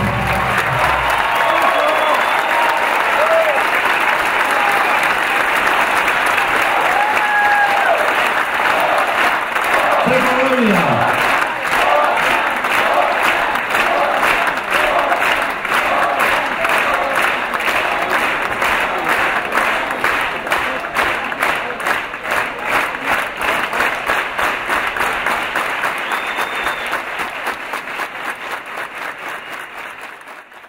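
A concert hall audience applauding and cheering as the orchestral music ends in the first second, with scattered shouts and whistles early on. From about twelve seconds in the clapping settles into a steady rhythmic clap in unison, fading out near the end.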